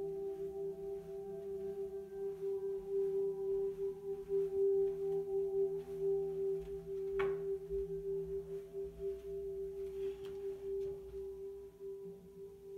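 A steady ringing drone holds one low tone throughout, with fainter overtones that come and go, like a singing bowl held on. A single short knock comes about seven seconds in.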